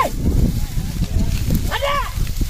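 A man's short, high-pitched shouted calls driving a pair of bullocks on, one right at the start and another near the end, over a steady low rumble.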